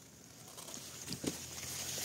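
Faint rustling of eggplant leaves and handling noise as the phone moves through the foliage, with a couple of soft ticks a little over a second in.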